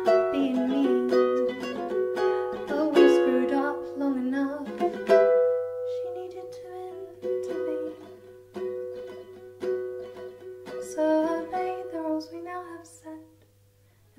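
Ukulele strummed with a woman singing along. The strumming is dense for the first few seconds, then thins out under a long held note, and the music drops away briefly just before the end.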